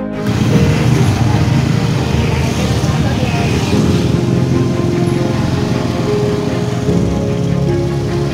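Small motor scooter running while being ridden, with a heavy rough rumble of wind on the microphone, under background music with steady held tones.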